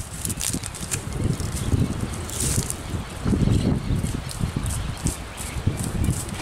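Hoofbeats of a ridden horse moving at a gait on grass, soft irregular thuds with some rustle and tack clicks.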